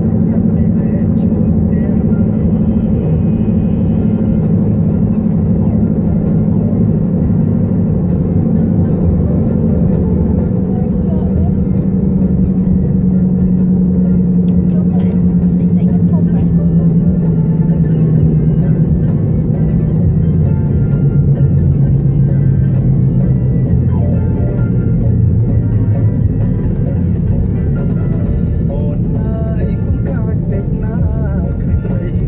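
Car cabin drone of engine and tyres at highway speed, falling slowly in pitch through the second half as the car slows, with music playing underneath.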